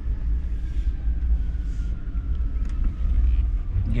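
Minivan engine and road noise heard inside the cabin while driving, a steady low rumble with a faint tone that slides slowly down in pitch.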